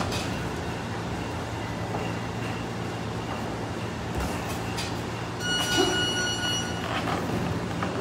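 Boxing sparring in a gym: scattered thumps of gloves and footwork on the ring canvas over a steady low hum. A little over halfway through comes a high squeal lasting about a second.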